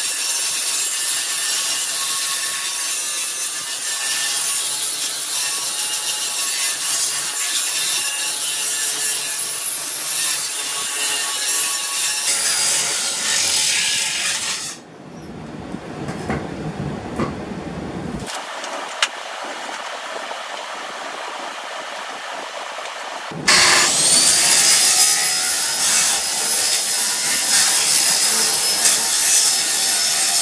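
A 15-amp Black & Decker angle grinder grinding steel, taking the dross off a plasma-cut edge. The grinding drops to a quieter stretch around the middle, then the grinder spins back up with a rising whine and grinds hard again.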